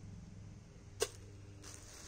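Plastic-packed shirts being handled: one sharp click about a second in and a faint rustle of plastic near the end, over a low steady hum.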